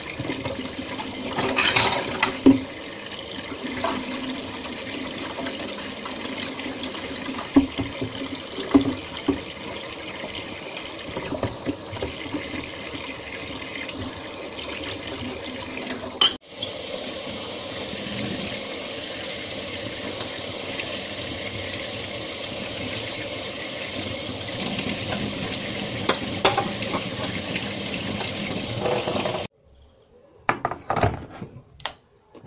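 Kitchen tap running steadily into the sink while dishes are washed, with occasional sharp knocks and clinks of crockery.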